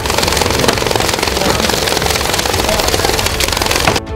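A loud, dense rushing noise with a fast flutter laid over intro music, starting and cutting off abruptly.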